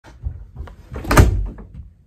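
A door shutting: a few light knocks and low thuds, then one loud thump about a second in.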